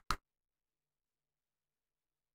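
Dead silence after one short click right at the start.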